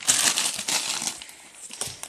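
Foil-lined plastic snack bag crinkling and rustling as it is handled and opened, loudest at first and thinning out near the end.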